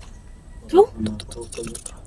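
A short, loud call rising in pitch, then a quick run of clicks lasting about a second.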